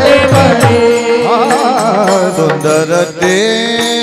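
Warkari kirtan devotional music: a voice holds and ornaments long notes with a wavering pitch over a steady drone, with small hand cymbals (taal). Low drum strokes stop about a second in.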